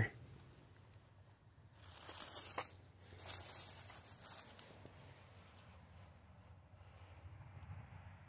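Dry fallen leaves rustling and crunching under a hand as an EMF meter is set down among them, in two short spells about two and three to four seconds in.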